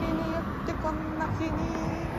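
Street traffic noise with wind on the microphone, over which a simple tune of short, steady held notes steps up and down in pitch.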